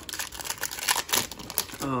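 Wrapper of a Panini Prizm basketball card pack crinkling and tearing as hands rip it open, a quick irregular crackle of plastic.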